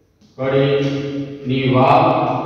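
A man's voice drawing out long syllables at a steady, even pitch, in a chant-like sing-song delivery, starting after a brief pause.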